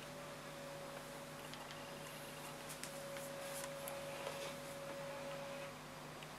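Acer eMachines E510 laptop booting up, faint: a steady thin whine that stops shortly before the end, with a few soft ticks.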